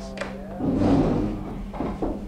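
Indistinct murmur of several voices talking over one another in a classroom, with a couple of light clicks right at the start.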